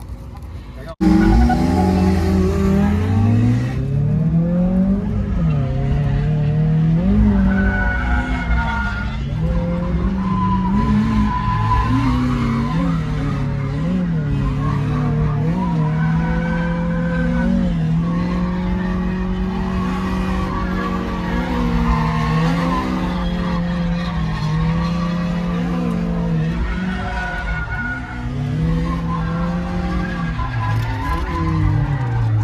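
A drift car's engine revving hard in the cabin, its pitch rising and falling with the throttle and held high through the middle stretch, with tyres squealing as the car slides. It cuts in suddenly about a second in.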